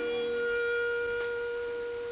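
Opera music: a single long note held at one steady pitch, with little else sounding under it.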